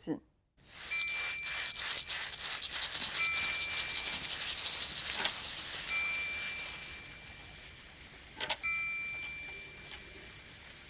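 Small hand-percussion piece: maracas shaken in a fast rattle that swells, then slowly fades, while a triangle is struck about four times and rings. Softer rubbing of sand blocks and a tambourine head sits underneath.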